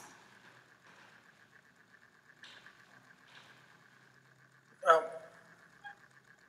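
Near silence: quiet room tone with a faint steady high-pitched whine, two faint soft noises in the middle, and a short spoken 'um' near the end.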